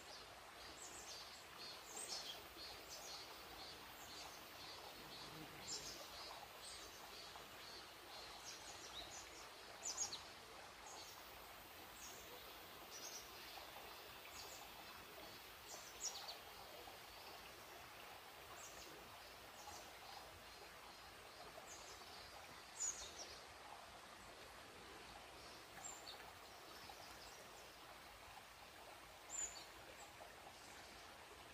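Faint forest ambience with small birds chirping now and then: short, high chirps scattered throughout, with a handful of louder single chirps standing out.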